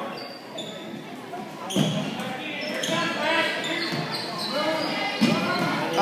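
A basketball bouncing on a hardwood gym floor during play, among indistinct, echoing voices of spectators and players in a large gymnasium.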